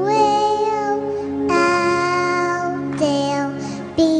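A four-year-old girl singing into a microphone over a backing track, in long held phrases that break for a breath about one and a half and three seconds in.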